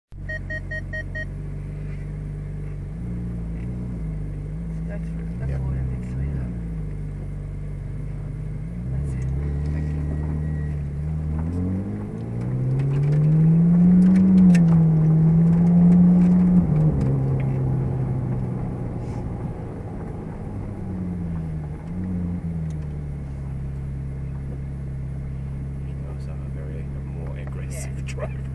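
Ferrari 458 Speciale's V8 engine, heard from inside the cabin, running at low road speed. Its pitch and loudness climb about twelve seconds in under acceleration, hold high for a few seconds, then ease back to a steady cruise. A quick run of short electronic beeps sounds at the very start.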